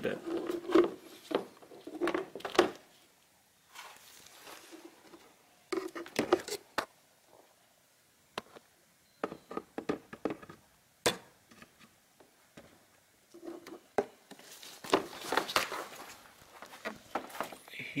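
Irregular plastic clicks and knocks with bursts of rustling as a radial engine air filter is worked by hand into the slot of a Ford Focus Mk3's plastic air filter housing. One sharp knock stands out about eleven seconds in.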